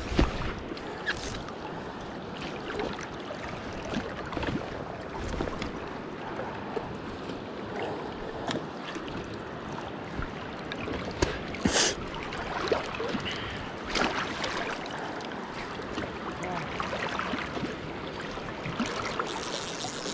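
Steady rush of the Kenai River's current flowing past, with a few sharp clicks from the rod and reel being handled.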